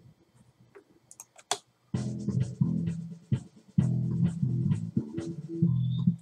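A recorded bass guitar riff playing back, starting about two seconds in: a run of low notes with sharp attacks and short breaks. A couple of mouse clicks come before it starts.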